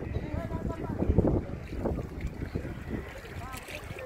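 Wind buffeting the microphone in uneven gusts, strongest about a second in, with faint distant voices talking.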